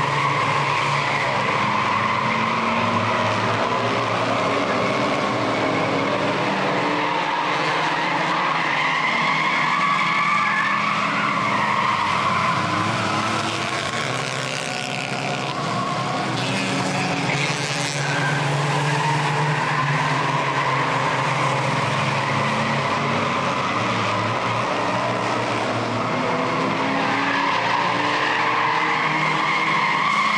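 A pack of front-wheel-drive compact race cars lapping a paved oval, several engines running at once and rising and falling in pitch as they go through the turns. The sound dips slightly about halfway through.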